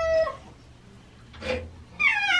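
Domestic cat meowing. One long meow falling in pitch ends just after the start, a short sound comes about one and a half seconds in, and the next meow begins at the very end.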